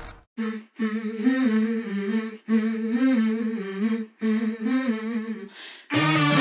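A voice humming a slow, wavering tune: one short note, then three longer phrases of about a second and a half each, with brief silent breaks between them.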